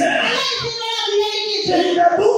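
A high voice singing into a microphone over a public-address system, holding one note for most of a second in the middle.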